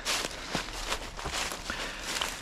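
Footsteps walking through deep, dry fallen leaves on a forest floor, a step about every half second.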